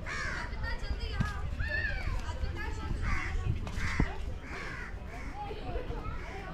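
Birds calling over and over, a short call about every second, over a steady low rumble.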